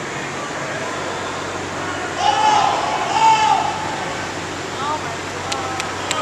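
A person's loud, drawn-out shout about two seconds in, lasting about a second and a half, over the steady background hum of a large indoor hall. A few faint sharp clicks come near the end.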